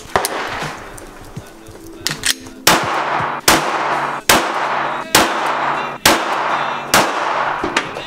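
Semi-automatic pistol fired in a steady string of shots, roughly one a second, each a sharp crack with a short echo, over background music.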